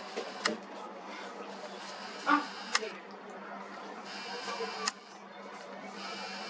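Camera handling noise: three sharp clicks about two seconds apart over a faint steady hum and hiss.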